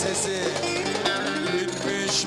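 Bağlama (saz), a long-necked Turkish lute, plucked in a lively Ankara-style folk dance tune, with quick runs of notes.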